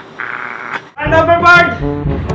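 A man's voice begins about a second in and is held long and drawn out, after a quiet first second with faint hiss.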